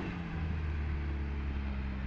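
Volvo Valp off-road truck's engine running steadily at constant revs.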